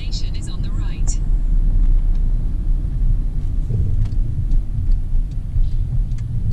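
Cabin noise of a car being driven: a steady low rumble of engine and tyres on the road, heard from inside the vehicle.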